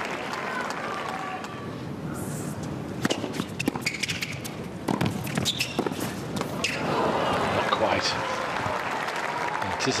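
Tennis ball and racket impacts on a hard court: a run of sharp separate knocks from the serve and rally about three seconds in. This is followed by a louder stretch of crowd noise from the arena spectators.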